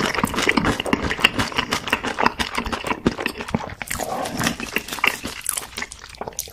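Close-miked chewing of crispy, sauced fried chicken: a dense run of wet crunches and mouth clicks.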